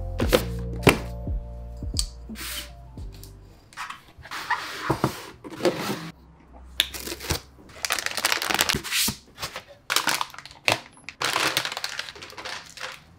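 Unboxing of PC parts: cardboard and packing sheets being handled and slid, with short knocks, then a plastic anti-static bag crinkling as a graphics card comes out. The sounds come in irregular bursts of rustling and taps. Background music fades out over the first few seconds.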